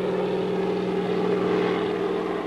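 Propeller aircraft engines droning steadily with an even, low hum.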